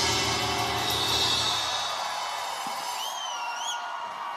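A live rock band's closing music dying away: cymbals ring out and the sound fades, its low end dropping away about a second and a half in. Near the end comes a single wavering whistle from the audience, rising at its close.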